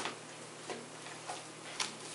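A dog chewing and tearing at a padded paper mailing envelope: a few short, scattered crinkles and clicks of paper, the loudest right at the start.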